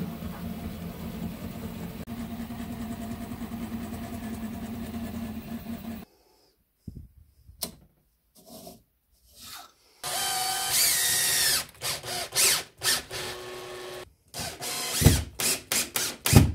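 An Original Prusa i3 MK3 3D printer running a print, its stepper motors humming steadily; about six seconds in this cuts to a few faint clicks. From about ten seconds a cordless drill runs with a whine for about four seconds, followed by a series of sharp knocks and clatter.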